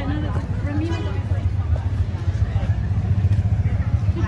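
A steady low rumble throughout, with indistinct voices heard briefly in the first second.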